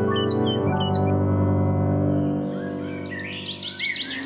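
Intro theme music of held, sustained chords that thins out in the second half, with birds chirping over it. The chirps grow busier near the end.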